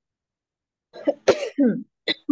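A person coughing, three coughs in quick succession starting about a second in, the middle one loudest.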